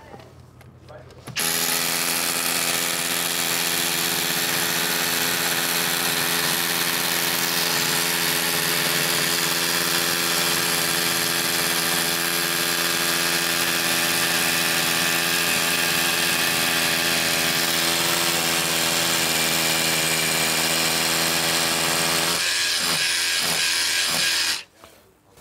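Hilti cordless rotary hammer drilling a hole into concrete with a masonry bit. It starts about a second and a half in and hammers steadily for about twenty seconds, changing near the end.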